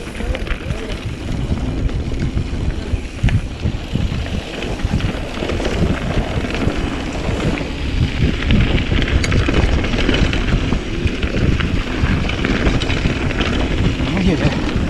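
Wind buffeting the microphone of a handlebar-mounted camera, with the rumble and rattle of a mountain bike rolling fast down a dirt trail and occasional sharp ticks from the bike.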